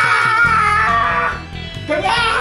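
Background music with a long drawn-out shout over it, held and sliding down in pitch, that dies away about one and a half seconds in.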